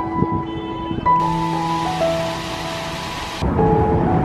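Background music of slow, long held notes. In the middle a hissing wash of noise, like rain, swells in for about two seconds and then cuts off suddenly.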